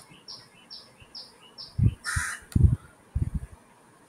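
A bird chirping repeatedly in the background: short chirps that fall in pitch, about two a second. A few low muffled sounds and a brief hiss come in the second half.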